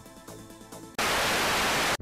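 Electronic music with a steady beat, cut off about a second in by a loud burst of static hiss that lasts about a second and stops abruptly.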